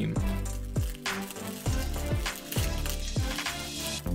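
A crinkly plastic snack-cake wrapper being handled, crackling irregularly, over background music.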